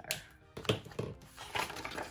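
Handling of a disc-bound planner page as it is peeled off the plastic disc rings: a handful of crisp clicks and paper rustles, about five in two seconds.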